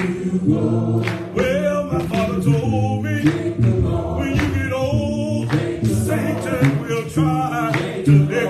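A church congregation singing a gospel song together, several voices holding sustained notes with no instruments audible.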